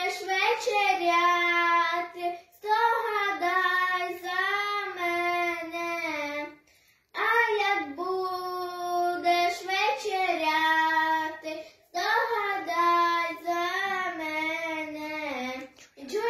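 A young girl singing a Ukrainian Christmas carol (koliadka) unaccompanied, in phrases with short breath pauses, the longest about halfway through.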